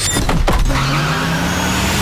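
A car driving off: its engine note rises slightly under a swelling rush of road and tyre noise, after a few sharp knocks at the start.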